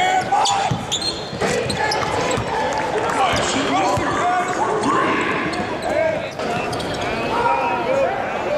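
Live basketball game sound on a hardwood court: the ball bouncing, sneakers squeaking in short chirps again and again, and voices from players and crowd in a large gym.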